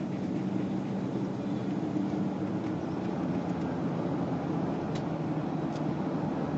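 Jaguar car engine droning steadily while driving, with tyre and road noise; two faint ticks near the end.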